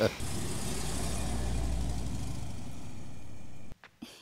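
A steady low rumbling noise with a hiss over it, holding an even level and cutting off suddenly near the end.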